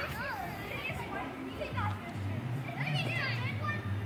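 Children's voices calling and shouting in the background, many short high-pitched calls overlapping, with a steady low hum coming in about halfway through.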